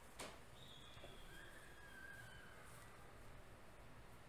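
Near silence: room tone with a single click just after the start, then two faint, thin whistling tones at different pitches that fall slightly and fade out about two and a half seconds in.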